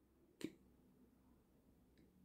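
Near silence: room tone in a pause between sentences, broken by one short, faint click about half a second in.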